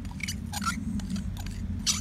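Sticky homemade slime squelching and clicking as fingers squeeze and pull at it in a glass mixing bowl, in a scattering of short, irregular sounds.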